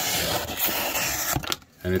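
Chef's knife blade slicing through a piece of printed card packaging: one continuous cutting sound of about a second and a half, ending in a light click. The knife's factory edge is being tested, and it cuts cleanly: it is quite sharp.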